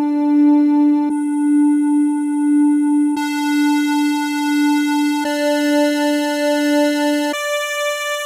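A held synthesizer note with a bright, buzzy timbre. Its tone colour changes abruptly about every two seconds, and it jumps up an octave about seven seconds in.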